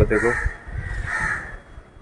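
A crow cawing twice, the two caws about a second apart.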